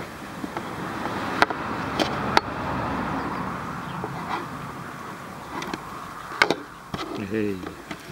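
A braided polyester rope rustles and rasps as a strand is worked through its plait with a wooden-handled metal fid. There are sharp clicks of the tool, three close together between about one and a half and two and a half seconds in, and one more at about six and a half seconds.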